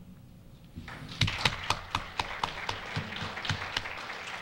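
Audience applauding, starting about a second in after a short pause, with separate claps standing out.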